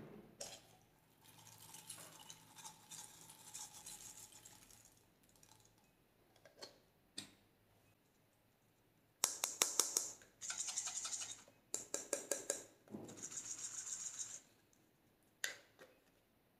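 A clear plastic capsule handled and opened with soft plastic rustling, then small beads shaken out of it over slime, rattling against the plastic in three quick bouts in the second half.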